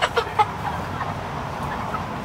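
Cornish Cross broiler chickens clucking, a few short sharp calls in the first half second and then quieter.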